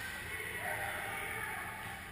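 Distant voices shouting and calling, echoing in a large indoor ice arena over a steady low hum.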